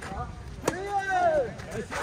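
Tennis ball struck by rackets during a rally: a sharp hit at the start and a louder one a little under a second in. A person's drawn-out exclamation follows the second hit.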